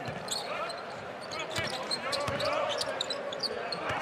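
A basketball being dribbled on a hardwood court, a series of sharp bounces, with faint voices of players and crowd in the arena.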